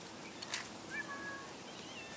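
Faint, brief animal calls: a couple of thin steady whistles about halfway through, a short rustle just before them, and a short faint call near the end.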